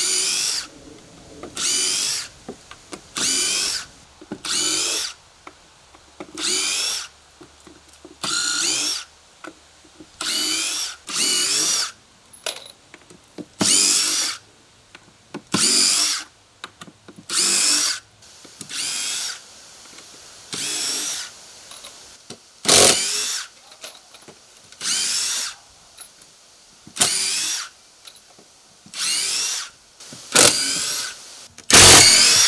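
Cordless drill backing deck screws out of old wooden deck boards: the motor whines in short runs of about a second each, one screw after another, about every two seconds.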